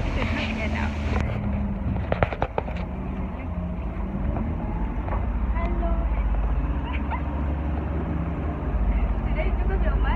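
City bus in motion, heard from a seat inside: a steady low engine and road rumble that swells near the end. A quick series of sharp clicks comes about two seconds in.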